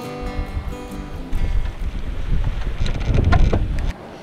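Wind buffeting the microphone in a low, rumbling rush that builds to its loudest about three seconds in, then cuts off abruptly. Guitar music fades out during the first second.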